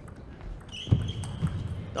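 Table tennis ball clicking off bats and the table during a fast doubles rally, with a louder knock about a second in and a short high squeak around the middle.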